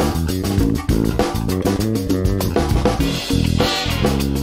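Warwick Streamer Stage II electric bass played fingerstyle, a busy moving bass line, over a backing track with a drum kit keeping a steady beat.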